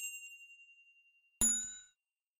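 Subscribe-animation sound effects: a clicked ding rings out and fades over about a second and a half, then a brighter bell chime for the notification bell sounds about a second and a half in and dies away quickly.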